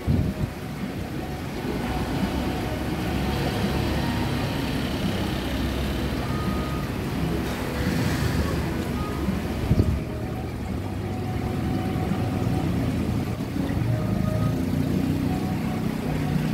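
Steady low rumble of street traffic and restaurant background noise, with one short click about ten seconds in.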